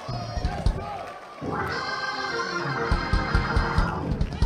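Organ playing sustained chords, swelling in louder about a second and a half in, with a run of low thumps underneath in the second half.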